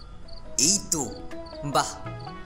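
Crickets chirping steadily in short regular pulses. Over them a voice makes two louder wavering, gliding sounds, about half a second in and again near the end.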